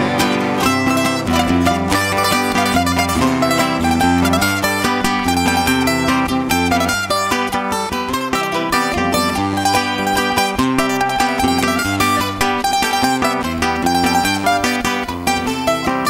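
Instrumental interlude of a Canarian punto cubano: guitars strumming the rhythm under a picked melody on a small round-bodied lute, with a double bass playing a steady line beneath, and no singing.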